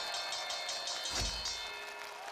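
Studio sound-effect stinger: a high ringing chime that starts suddenly and pulses several times a second, with a single low boom about a second in, marking the end of the 100-second timer and a successful challenge.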